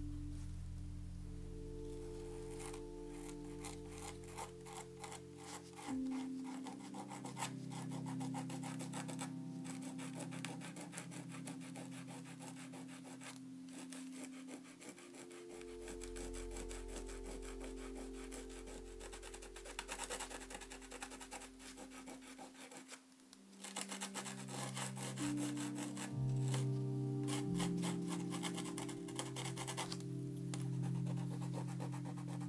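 Dried masking fluid being rubbed off watercolour paper, a dense rapid scratching with grains of salt still on the paper, over soft background music of held chords that change every few seconds.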